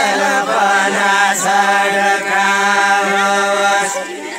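A group of villagers singing a deuda folk song together in unison, without instruments, on long held notes with a few short breaks between phrases.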